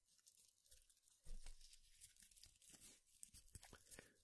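Faint crackling and crinkling of tiny rose petals being handled between the fingers, a scatter of small dry crackles that gets a little busier about a second in.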